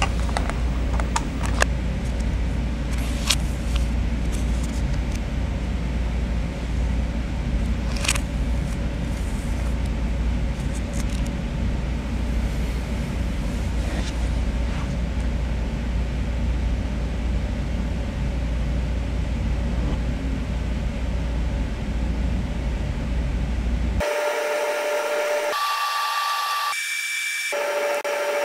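A steady low rumble with hiss and a few sharp clicks. Near the end it cuts off and gives way to a few clean held tones that step up in pitch.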